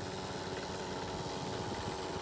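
Small engine of a wheeled line-striping paint machine running steadily as it is pushed along.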